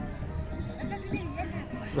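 Faint background of distant music and indistinct voices, with no close sound; a nearby voice begins right at the end.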